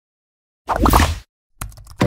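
Animation sound effects: a short cartoon pop with a quick bend in pitch, then a run of computer-keyboard typing clicks near the end.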